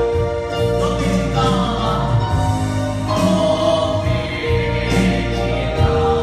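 A worship song played on electronic keyboards, with held chords and a steady bass, and a man singing the melody into a microphone.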